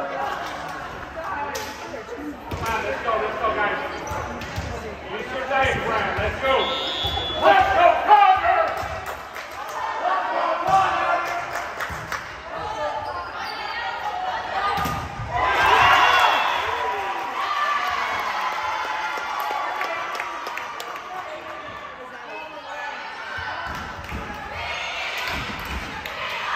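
Volleyball rally in a gym: sharp hits of the ball off players' hands and arms and the hardwood floor, mixed with players shouting calls and spectators yelling, louder swells of voices about a third of the way in and again past the middle.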